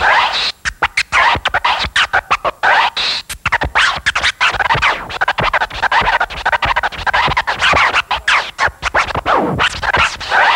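Vinyl record scratching on turntables through a DJ mixer: fast, choppy scratches cut into short stabs with brief gaps, the pitch sweeping up and down as the record is pushed back and forth.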